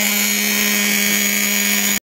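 Traxxas Jato 3.3 RC stadium truck's two-stroke nitro engine idling at a steady pitch, a high buzz that does not rise or fall.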